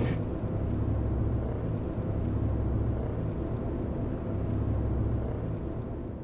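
Steady low rumble of a moving vehicle, fading out near the end.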